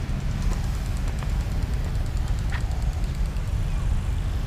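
Steady low rumble of outdoor background noise, with a few faint ticks.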